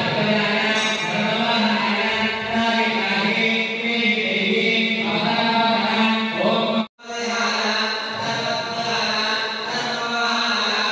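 Hindu devotional mantra chanting over a steady drone, with a sudden brief cut-out about seven seconds in.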